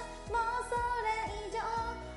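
Japanese pop song with a woman singing over a backing track that has a steady beat.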